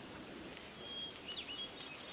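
Quiet background ambience with a few faint, short bird chirps in the second half.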